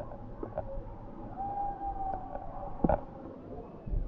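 Muffled underwater rumble of spring water heard through a camera held under the surface, with a thin tone lasting about a second in the middle and a few knocks. The loudest is a sharp knock about three seconds in.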